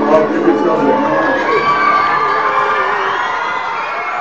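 A group of children cheering and shouting together, many voices at once, gradually fading out.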